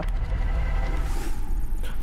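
Broadcast transition sound effect opening a TV news traffic segment: a steady low rumble with a hissing whoosh about a second in.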